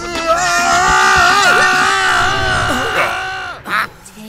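A cartoon character's long, wavering scream held for about three seconds, then a short cry near the end.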